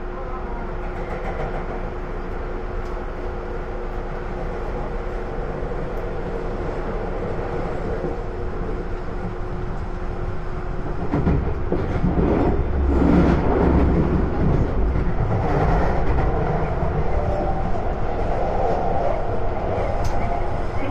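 Tokyu Den-en-toshi Line commuter train running, heard from inside the front car. About eleven seconds in it grows louder, with a heavier rumble and an uneven clatter of the wheels running over points.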